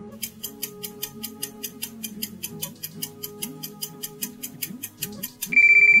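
Quiz countdown-timer sound effect: a clock ticking quickly and evenly, about six ticks a second, over soft background music. Near the end a loud steady electronic beep of about half a second marks time up.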